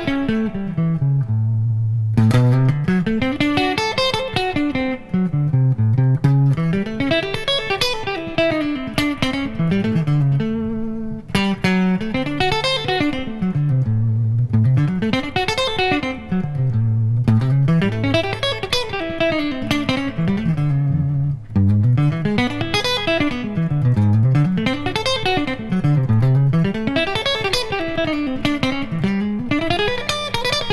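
Unaccompanied electric guitar improvising fast single-note arpeggio runs, outlining the dominant-seventh chords of a 12-bar blues as they change. The runs sweep down and back up over and over, about one rise and fall every two seconds.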